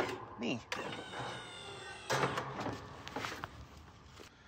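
Electric deck-lift actuator on a Cub Cadet Pro Z 972 SDL slope mower whining steadily as it raises the cutting deck with a man standing on it.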